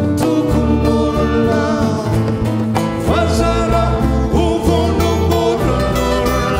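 Live recording of a Malagasy folk band: voices singing a melody over guitar accompaniment and a low bass line.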